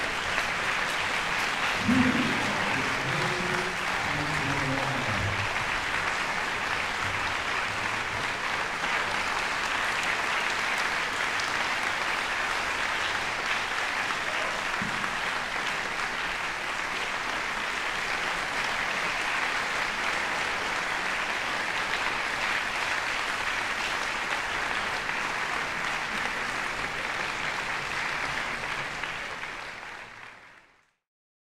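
Audience applauding steadily in a concert hall, with a voice heard briefly a couple of seconds in. The applause fades out near the end.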